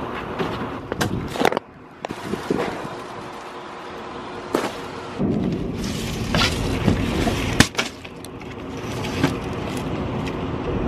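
Flattened cardboard boxes being handled, slapped down and slid across pavement, giving a series of separate knocks and scrapes over a faint steady background hum.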